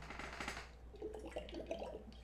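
Faint sounds of a man drinking from a water bottle: the bottle handled and raised to the mouth, then soft sips and swallows.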